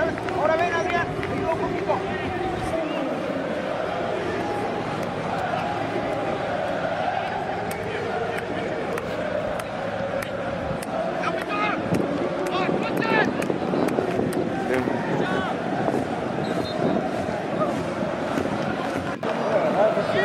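Distant, unintelligible shouts and chatter from soccer players and sideline spectators, over steady outdoor background noise.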